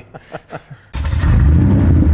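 A brief laugh, then suddenly about a second in a loud engine rumble and rev sound effect that opens the outro logo.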